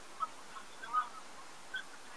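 Faint, scattered short chirps of birds, a few brief high calls at irregular moments, the clearest about a second in.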